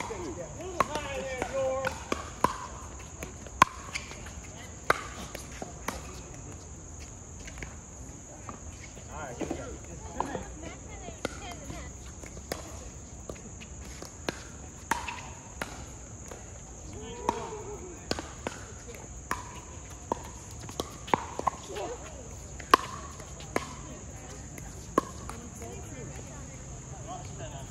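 Pickleball paddles hitting a plastic pickleball in rallies: sharp pops at irregular intervals, some close and loud, others fainter from neighbouring courts, with the ball bouncing on the hard court.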